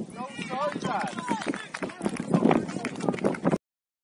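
Crowd of young footballers and touchline spectators shouting and cheering, several high-pitched voices rising and falling together, louder shouts in the second half. The sound cuts off suddenly about three and a half seconds in.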